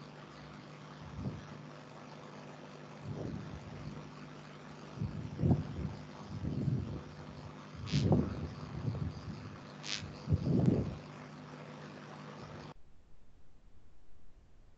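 Open microphone on a video call: a steady low electrical hum with several soft, muffled low thumps and two short sharp clicks, then the hum cuts off suddenly near the end as the audio line drops.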